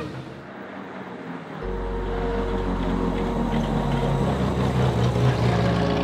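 A car running, with music starting about a second and a half in. The music's low notes shift about every two and a half seconds.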